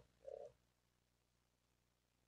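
Near silence, apart from a short low murmur of a person's voice in the first half second.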